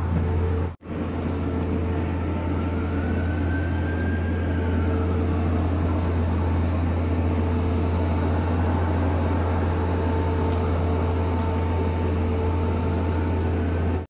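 A steady, loud, low mechanical hum with a couple of steady tones over street noise. A faint whine rises and falls about four seconds in.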